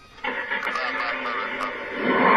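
Broadcast-style audio cutting in suddenly about a quarter second in: a voice mixed with music, thin-sounding with little treble.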